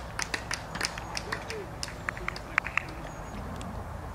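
Quiet outdoor ambience of faint distant voices, with a scattering of short, sharp ticks at irregular intervals.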